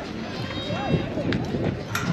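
Indistinct voices of softball players and spectators calling out and chatting, with two short clicks in the second half.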